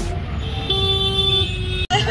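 Road traffic noise heard from an open e-rickshaw, with a vehicle horn sounding once for under a second in the middle.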